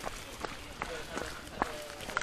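Footsteps of a group of people walking and jogging on a wet dirt path, irregular steps with a few louder ones, under indistinct chatter of the people around.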